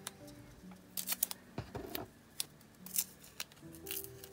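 Washi tape being peeled off its roll and torn by hand: a scatter of short, crisp crackles and ticks. Quiet background music plays underneath.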